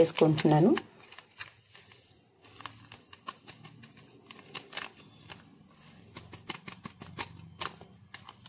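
Plastic sachet of fruit salt crinkling faintly in the hand, with scattered small irregular ticks and crackles, as it is opened and its powder poured out.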